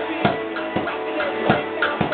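A reggae-rock song with guitar plays while drums are struck with sticks along with it, in a beat of roughly two hits a second, with one stronger hit after the middle.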